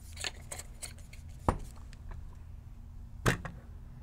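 A metal paintball marker and its barrel being handled on a table: light metallic clicks as the barrel is screwed on, then two sharp knocks, about a second and a half and three seconds in, the second louder, as the markers are set down and moved on a scale.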